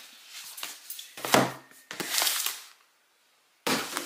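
A cardboard box holding a boxed knife set being handled: a few knocks and a heavier thump, then a short scraping, sliding rustle of cardboard, after which the sound cuts off abruptly.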